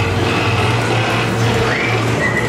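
Dark-ride soundtrack of music and effects over a steady, pulsing low hum, with a rising call near the end.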